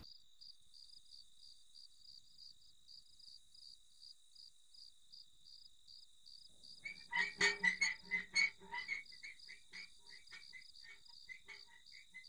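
Night ambience: faint crickets chirping in a steady rapid pulse, joined about seven seconds in by a run of short repeated frog croaks that are loudest at first and then thin out.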